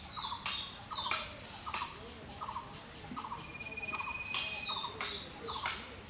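Birds calling around the scene: a short rapid call repeats about every half second to second, with higher chirps and one thin whistle. Several short rustles of jute leaves and stems being handled come between the calls.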